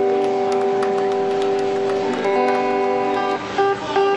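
Electric guitar chord strummed and left ringing, held steady for about three seconds, then cut off and followed by a few single notes near the end.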